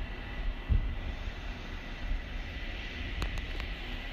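Wind buffeting the microphone: an uneven low rumble that swells in gusts, with a steady hiss above it.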